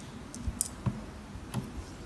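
Light metallic clicks and taps as a bobbin case is pulled out of a sewing machine's hook and handled: a handful of short, separate clicks spread through the two seconds.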